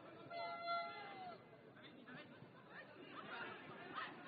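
Faint voices of players and spectators at a floodlit football pitch. About half a second in comes one long, high, drawn-out call that falls in pitch at its end, and scattered calling follows near the end.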